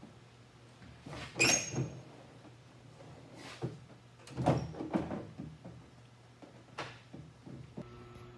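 Scattered knocks and clunks of removable T-top roof panels being handled and set into a 1969 Corvette's roof, the heaviest few around the middle, over a low steady hum.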